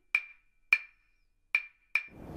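Four sharp, wood-block-like percussion knocks, each with a brief high ringing tone. They are unevenly spaced, about half a second to nearly a second apart, with the last two close together near the end.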